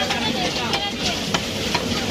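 Cleaver chopping a whole chicken on a wooden chopping stump: a few short, sharp chops, about three in under two seconds, over steady background noise.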